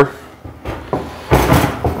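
Wire-mesh cage trap being handled, with one short scraping noise about a second and a half in.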